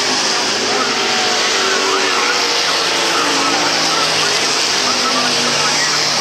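Pro Stock dirt-track race cars' V8 engines running at racing speed around the oval, the engine note rising and falling as they go by, with voices in the background.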